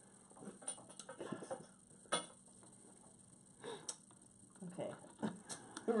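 A handful of sharp clicks and taps, spaced irregularly, with faint low voices murmuring in a small room.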